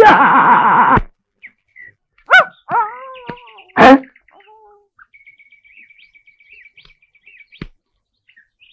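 A man shouts loudly for about a second, then come two short sharp cries with a falling wail between them. Faint birds chirp through the second half.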